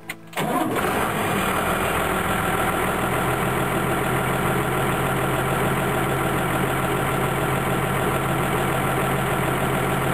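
Diesel farm tractor engine started, heard from inside the cab: a brief crank, it catches about half a second in, then idles steadily.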